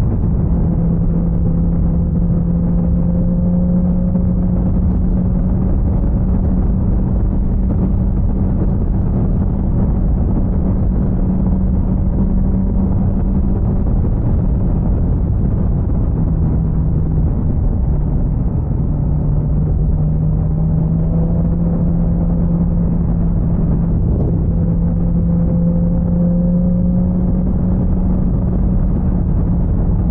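BMW S1000XR inline-four engine running at a steady cruising pitch under an even rush of wind and road noise. The note drops off about halfway through, then climbs slowly again as the bike picks up speed.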